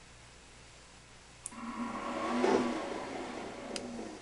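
Graphtec CE5000-60 cutting plotter's motors whirring briefly after Enter is pressed: a click, then a steady whir that swells and fades over about two seconds, with another short click near the end.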